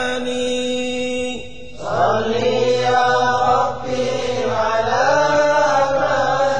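Unaccompanied chanting of an Arabic Sufi qasida: a voice holds one long note, breaks off about a second and a half in, then the sung line resumes at a lower pitch with a wavering, ornamented melody.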